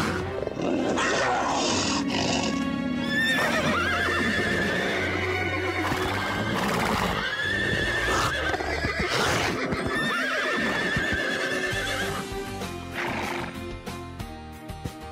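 Cartoon horses neighing and whinnying several times in long, wavering calls over dramatic background music.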